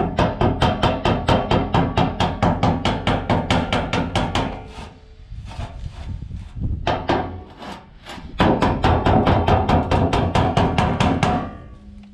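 Rapid, even hammer taps on the end of a metal rain gutter, knocking its edge inward over a round wooden block to shape a funnel for the downpipe outlet. The tapping pauses for about two seconds midway, then resumes. Background music plays underneath.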